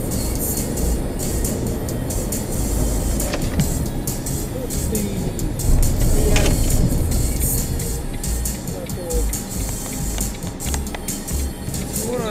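Road noise inside a moving car, picked up by a dashcam, with a louder stretch and a sharp crash about six seconds in as a lorry ahead collides and overturns.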